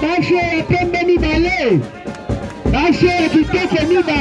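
Music with a steady bass beat and a pitched sung or melodic line that holds notes and slides between them, dipping briefly about halfway through.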